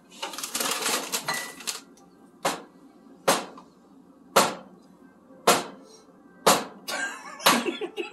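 A raw egg tapped against a hard edge about once a second, six sharp knocks, too gently to crack it open. A short rustling noise comes before the first knock.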